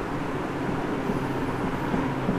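Steady room noise, a low hum with hiss, and no distinct event.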